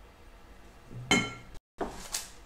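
A single short clink of kitchenware about a second in, with a brief ring, over quiet kitchen room sound.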